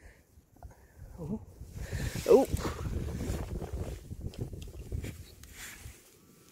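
Gloved hands pressing and crumbling apart a clump of earth: a dense, irregular rustling crackle over a low rumble, lasting about four seconds and easing off near the end.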